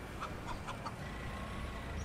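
Faint chicken clucking: four or five short clucks over a low background hum.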